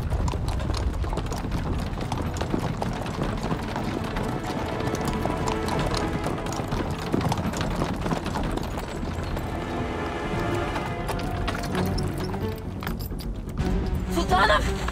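Horse hooves galloping over forest ground, under background music.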